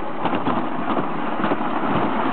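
Toboggan sled running down its trough: a steady rushing rumble laced with fine, rapid rattling.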